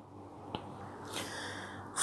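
Quiet room tone with one faint, short click a little over a quarter of the way in, then a soft hiss in the second half.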